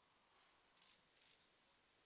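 Near silence: quiet room tone, with two faint, brief rustles close together about a second in.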